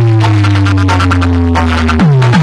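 Electronic DJ music blasting very loudly from a competition sound rig of stacked horn loudspeakers: a held deep bass note with a higher tone slowly sliding down above it.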